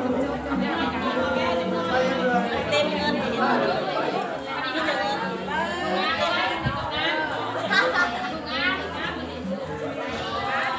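Several people talking at once: a steady chatter of overlapping voices in a large room.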